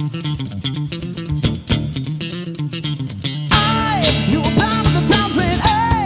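Acoustic guitar strummed in a quick, steady rhythm; about three and a half seconds in, a man's voice comes in singing over it.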